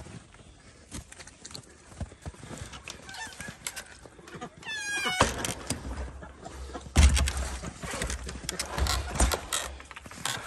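Duck calls, with a short pitched call about five seconds in. After it come knocks and crunching from handling a plastic water jug in snow, with heavy thumps about seven and nine seconds in.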